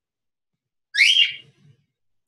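A short, high-pitched squeal that rises in pitch and then holds, about a second in: a woman's effort sound as she finishes the last dumbbell rep of a set.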